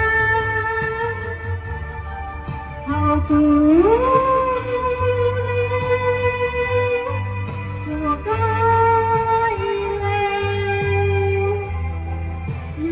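A woman singing through a microphone and loudspeakers over backing music with a steady bass line. She holds long, drawn-out notes and swoops up to a higher note about four seconds in.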